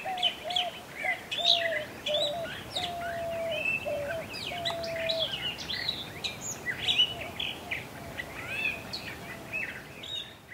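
Long-billed Thrasher singing, a continuous run of quick, varied phrases. A lower bird note repeats several times through the first half, some notes short and some held longer.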